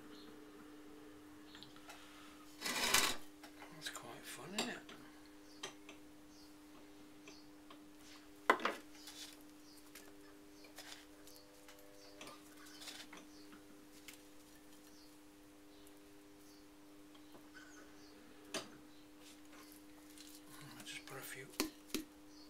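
Steady hum from an electric potter's wheel. Over it come occasional knocks and scuffs as hands press dents into a wet clay vase. The loudest are a scuffing burst about three seconds in and a sharp knock near nine seconds.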